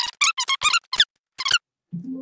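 A man's voice fast-forwarded to many times normal speed, coming out as a quick run of short, high-pitched, squeaky chirps, about eight in two seconds.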